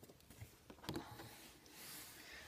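Faint handling noise: a few light taps and rustles as a stiff oversized foil trading card is moved and set aside.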